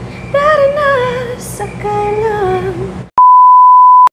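A woman singing a few melodic phrases, cut off about three seconds in by a loud, steady, single-pitch test-tone beep lasting just under a second, the edited-in colour-bars tone.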